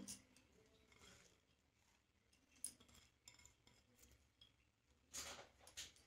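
Near silence with faint handling sounds: one small tick midway and a short soft rustle near the end, as fresh coriander leaves are dropped into a steel mixer-grinder jar.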